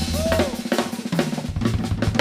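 Live funk band in a drum break: the bass drops out for about a second while the drum kit and percussion play sharp snare, bass drum, hi-hat and rim hits. The full band comes back in near the end.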